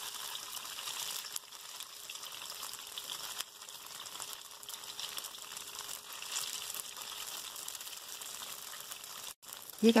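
Oil sizzling steadily in a nonstick wok as shrimp-paste-stuffed tofu cubes pan-fry shrimp side down over medium-high heat. The sizzle breaks off briefly near the end.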